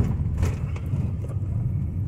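A car's engine and road noise heard from inside the moving car's cabin: a steady low rumble, with a couple of light clicks in the first half second.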